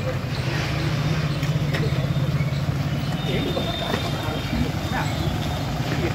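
A Toyota Fortuner SUV's engine running as the vehicle rolls slowly past, a steady low hum, with people's voices and a few short clicks around it.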